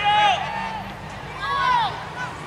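Two high-pitched shouted calls from voices around the ballfield, one at the start and one about a second and a half in, each rising and then falling in pitch, over a steady low rumble.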